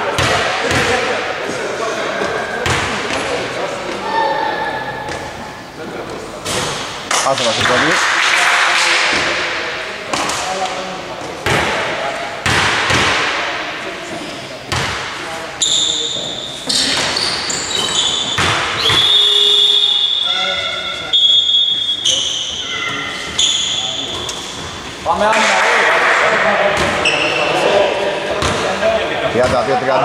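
Basketball game in a large echoing hall: a ball bouncing and thudding on a wooden court again and again, with players' voices shouting over it.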